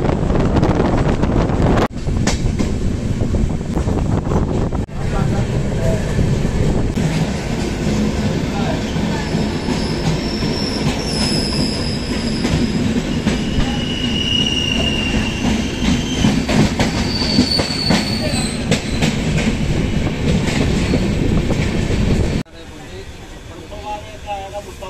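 Moving passenger train heard from an open coach doorway: steady wheel-and-rail rumble and clatter, with several high wheel squeals between about ten and eighteen seconds in. The sound stops suddenly near the end.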